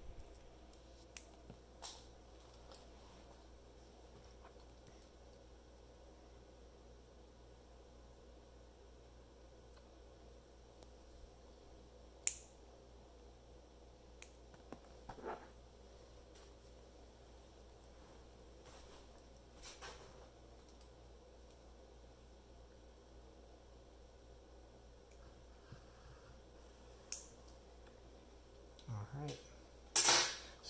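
Dull cuticle clippers snipping the ends off rawhide strings: single sharp clicks spaced several seconds apart, the loudest about twelve seconds in, over a quiet room.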